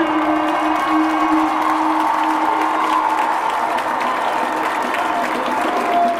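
Crowd applauding and cheering as a marching band piece ends, with a held low note that fades out about halfway through.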